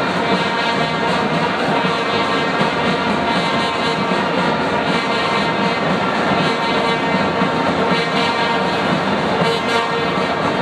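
Stadium crowd noise dominated by a steady drone of many blown horns, their pitched tones sounding together without a break over the general crowd roar.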